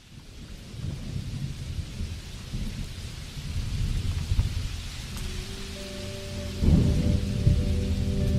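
Recorded rain and rolling thunder fading in as a song intro, with steady instrument notes entering about five seconds in and a louder rumble of thunder near the end.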